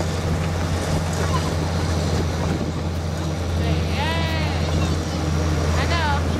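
The engine pulling a hayride wagon, a steady low drone under the rumble of the moving wagon. A high-pitched voice calls out about four seconds in.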